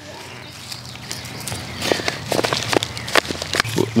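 Gloved hands handling a plant in a plastic nursery pot and setting it into the soil and bark mulch: a run of short rustles, scrapes and taps starting about two seconds in, after a quieter start.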